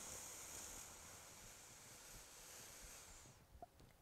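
A slow, deep inhale through the nose: a faint, steady hiss of breath that fades out about three seconds in.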